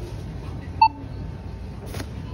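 Self-checkout barcode scanner giving one short beep about a second in as a product is scanned, over a steady low background hum.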